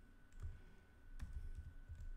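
A few faint computer keyboard keystrokes, clicks about half a second and just over a second in, from typing and editing code.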